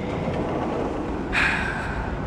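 Steady outdoor city noise, a low rumble of distant traffic, heard from a high balcony, with a louder hiss swelling a little past the middle for about half a second.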